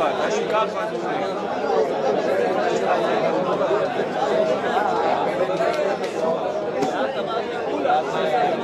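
The hubbub of a yeshiva study hall (beit midrash): many men studying Torah aloud at once, a steady din of overlapping voices in which no single voice stands out.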